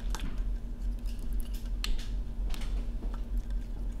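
A few light, separate clicks and snaps of small parts being handled and seated on an iPhone 6S test dock. A steady electrical hum from the bench equipment runs underneath.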